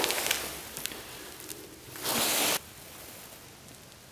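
A short rustle of handling, about two seconds in, lasting about half a second and cutting off sharply, against a faint hiss that fades over the first second.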